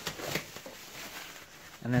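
Plastic bubble wrap rustling and crinkling with small crackles as hands dig into a packed cardboard box.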